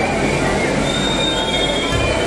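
Loud, dense crowd noise from a packed crowd on the move: many voices and shuffling at once. Thin high-pitched tones come over it about halfway through and last under a second.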